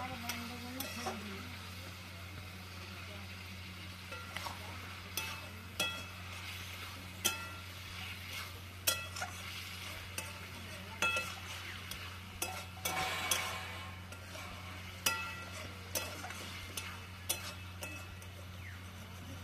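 A metal spoon stirring curry in a metal cooking pot, knocking and scraping against the pot in irregular short ringing clinks, over a faint sizzle of frying.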